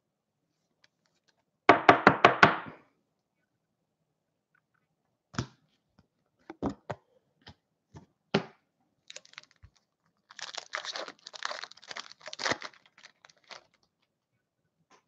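Hockey cards and clear plastic card holders being handled on a table. A quick run of clicks and taps comes about two seconds in, then scattered light clicks, then a couple of seconds of crinkling near the end.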